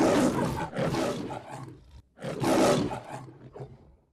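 Lion roaring twice, the MGM film-logo roar. The second roar starts about two seconds in and trails off near the end.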